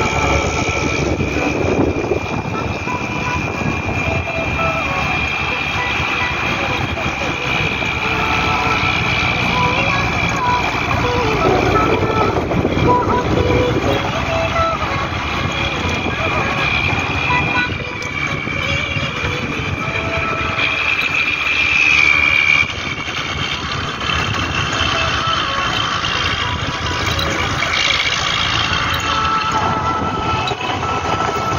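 Engine and road noise of a moving bus, heard from inside the bus, with a voice sounding over it.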